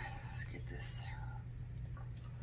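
A woman's quiet, whispery murmur under her breath, mostly in the first second, over a steady low hum.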